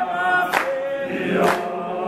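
A group of people singing together as a choir, one man's voice led through a microphone, with a crisp beat about once a second.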